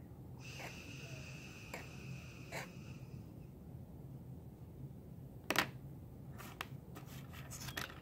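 Hands working polymer clay on a wooden board: soft handling with scattered small clicks and taps, the loudest a sharp click about five and a half seconds in and a quick run of clicks near the end. A faint high whistling tone sounds during the first three seconds.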